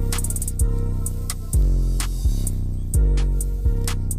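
Background music with a steady drum and bass beat.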